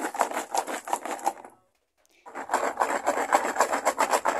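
Jackfruit seeds rattling in water inside a plastic bottle that is being shaken hard back and forth, a rapid even run of knocks, several a second. The shaking rubs the red seed coats off the seeds. The rattling breaks off for about half a second partway through, then resumes.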